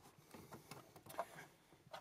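Near silence with a few faint clicks and rustles from a hand handling a trailer-light wire in plastic corrugated loom at a body grommet.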